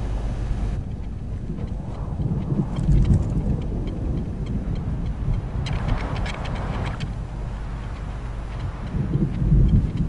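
Storm sound effects: a deep, continuous rumble of thunder that swells about three seconds in and again near the end, with a rushing gust of wind about six seconds in.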